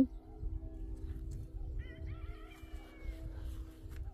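Outdoor garden ambience: a steady low hum of several held tones over a low rumble of wind on the microphone. About two seconds in comes a short bird call that glides down in pitch.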